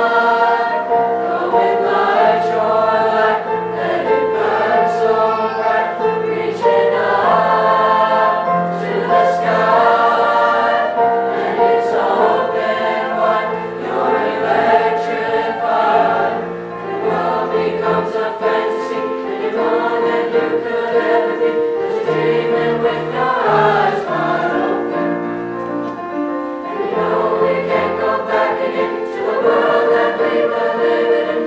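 Mixed-voice school choir of boys and girls singing a song in parts, with steady sustained notes throughout.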